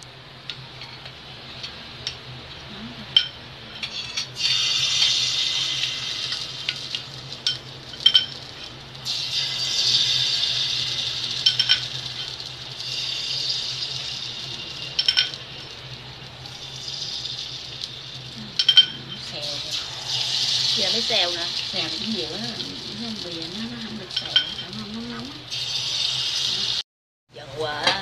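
Batter sizzling as it is ladled into the hot, oiled wells of an aluminium bánh khọt pan, in about six bursts of a few seconds each, with the metal ladle clinking against the pan between pours.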